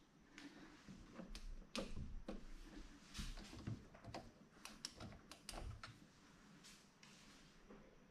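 Faint, irregular clicks and taps of a hand handling a fishing drone, dying away about six seconds in.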